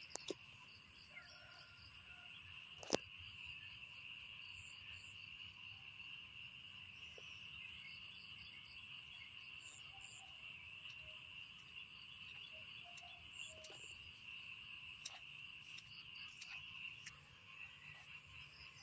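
Faint, steady high-pitched chorus of calling frogs and insects in wet rice fields. A single sharp click comes about three seconds in.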